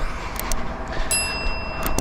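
Mouse clicks and a ringing chime from a subscribe-button animation, over the steady low hum of an idling truck engine. The chime starts about halfway through and rings on to near the end, with a last click just before it stops.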